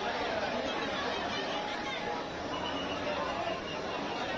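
A packed crowd of people talking and calling out over one another, a steady din of many voices.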